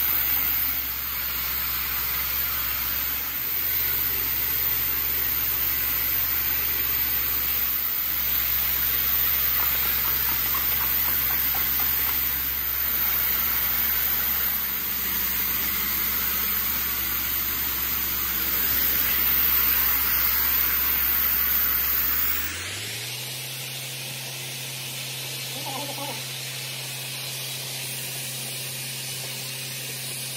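A steady machine hum under a constant hiss, with no clear strokes or rhythm. It turns quieter and duller about three quarters of the way through.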